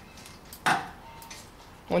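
A single sharp metallic clink, a little under a second in, from a wrench working a tight brake caliper bolt.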